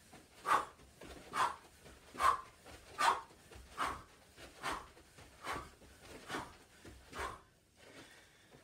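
A man's short, forceful breaths out, about nine in a row at an even pace a little under one a second, in time with fast judo footwork steps and turns.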